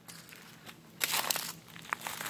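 Footsteps crunching on dry leaves and twigs of the forest floor, a short burst of crunches about a second in against faint background.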